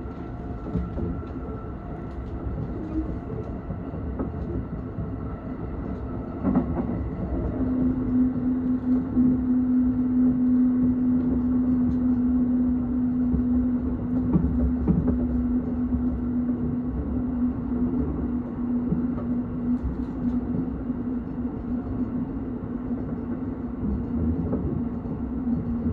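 Running noise of a moving electric train heard from inside the carriage: a steady rumble of wheels on the track. A steady low hum joins in about seven seconds in, as the noise gets louder, and fades near the end, with a few brief knocks along the way.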